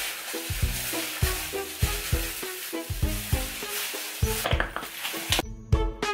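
Wet squishing and rubbing of plastic-gloved hands working wash-out hair colour through hair, a steady hiss-like sound over background music with a regular beat. The rubbing stops near the end, leaving only the music.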